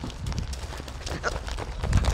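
Hurried footsteps on pavement, a quick uneven run of knocks, over a low rumble from the phone microphone being jostled as it is carried.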